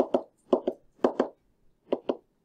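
A pen tip tapping on a whiteboard as dots are drawn: short sharp taps in quick pairs, about one pair every half second, each pair marking a pair of electron dots.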